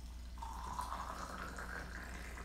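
Hot water poured in a thin stream into a glass pitcher, starting about half a second in, with a faint tone that rises slowly as the pitcher fills. The water is being poured back and forth between glass pitchers to cool it to about 85 °C for green tea.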